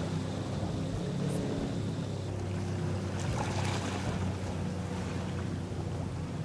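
Steady low drone of a motorboat engine over water and wind noise, with a brief rush of hiss about halfway through.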